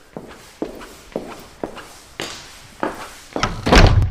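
Intro of a hard-rock song: single percussive drum hits about two a second, getting louder, with a cymbal wash swelling in. It builds into a loud crescendo near the end as the band is about to come in.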